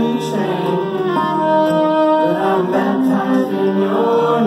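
Solo acoustic guitar played live with a wordless sung vocal over it, in held, slow notes.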